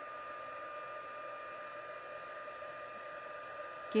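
Embossing heat tool running steadily on its highest setting: a constant rush of blown air with a steady high tone.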